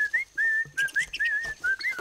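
A whistled run of short notes, a single pitch line sliding up and down, with several quick upward and downward slides.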